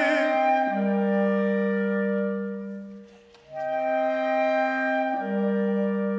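A tenor's sung note with vibrato ends in the first moment. Then clarinets from the chamber ensemble, an E-flat clarinet and a bass clarinet, hold long, steady chords. The chords die away briefly just past the middle, and new sustained notes enter, a low note returning near the end.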